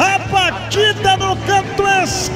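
Excited male radio commentator calling a goal, his voice raised and sing-song in quick pitched bursts over a steady low hum.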